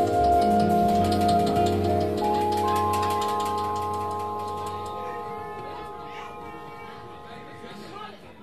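Final chord of a live bossa nova band ringing out: vibraphone notes and a low bass note sustain and fade steadily over several seconds.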